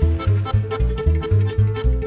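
Romanian lăutari fiddle sounded by pulling a horsehair thread tied to its string instead of bowing, giving a sustained, held tone. Band accompaniment runs under it with a quick, steady bass beat.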